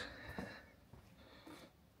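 Near silence: quiet outdoor ambience with only a few faint small noises.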